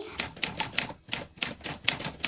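Typewriter key-strike sound effect: a quick, even run of sharp clacks, about six a second, typing out on-screen text.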